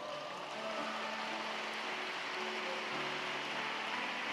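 Congregation applauding, an even patter of clapping, over soft sustained instrumental chords.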